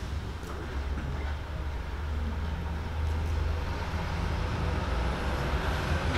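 A steady low rumble of background noise, with no speech, in a pause of the meeting.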